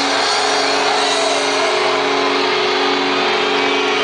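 A live heavy metal band's final distorted electric guitar chord, held and ringing out steadily at the end of the song, captured loud and coarse on a phone recording from the crowd.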